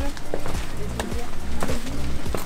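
Footsteps on a stone path, a series of short irregular steps, over background music.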